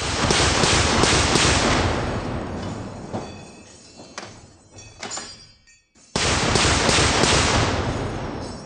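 Roof-mounted M2 .50-calibre heavy machine gun firing two short bursts, the first at the start and the second about six seconds in, each a few rounds followed by a long rolling echo.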